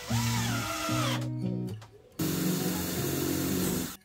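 Green Bosch cordless drill running into the wooden feeder frame in two goes: a short burst whose pitch rises and then falls, then a steadier run of about two seconds near the end. Acoustic guitar music plays underneath.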